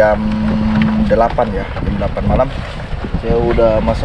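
A steady low motor hum over a rumbling background, with people's voices talking over it in short phrases.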